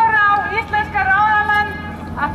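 A raised voice calling out in long, high, drawn-out tones that bend in pitch, loudest at the start.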